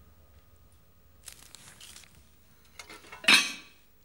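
A soft rustle, then one sharp, loud clatter about three seconds in, from a portable gas cassette stove and cookware being handled.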